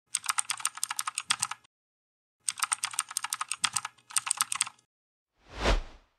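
Rapid computer-keyboard typing clicks in short runs, a second or two each, with a pause between them. Near the end comes a single short rush of noise that swells and fades.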